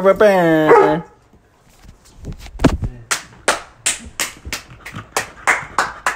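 A man's drawn-out laughing shout in the first second. After a short pause, a steady run of hand claps follows, about two to three a second for roughly three seconds.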